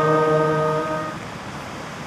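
A trumpet holds a final sustained note that fades out about a second in, leaving the steady rush of surf.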